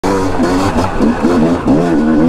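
Yamaha YZ250 single-cylinder two-stroke engine heard from on board under riding load, its pitch rising and falling repeatedly with the throttle.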